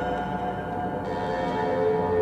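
Ambient electronic music played live on a modular synthesizer: a dense bed of sustained, held tones with no beat.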